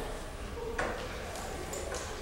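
A light knock a little under a second in, then a couple of fainter clicks, with a faint voice in the background.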